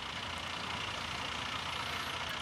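Steady low hum of an idling engine, with no sudden sounds.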